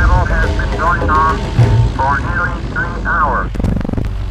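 A man reporting live in a 1941 NBC radio broadcast from Honolulu. The voice is thin and narrow like a telephone line, over a steady low drone, with a short break and a few clicks near the end.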